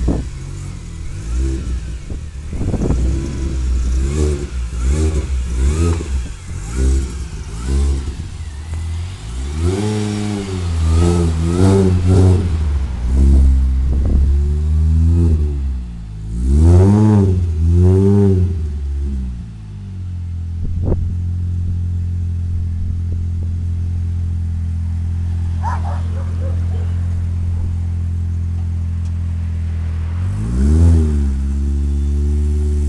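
Small hatchback's engine being revved: quick blips about once a second, then several longer rises and falls in pitch, before settling into a steady idle for the last ten seconds. A single sharp click is heard shortly after it settles.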